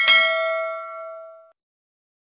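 Notification-bell sound effect: one bright bell ding, a single struck tone with several ringing overtones that fades out after about a second and a half.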